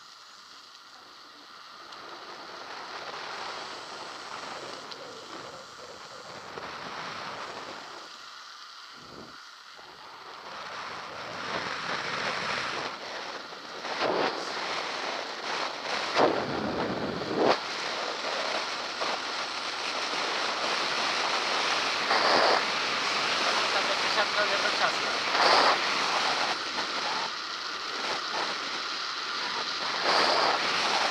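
Wind buffeting a head-mounted action camera's microphone, mixed with bicycle tyres rolling on tarmac. It grows louder as the bike picks up speed downhill from about ten seconds in, with a few sharp knocks along the way.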